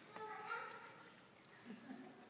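A baby's brief high-pitched vocal sound, a single fussing cry lasting about a second.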